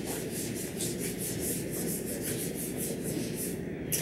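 Whiteboard eraser wiping a whiteboard in quick back-and-forth strokes, about four a second. A sharp tap comes near the end.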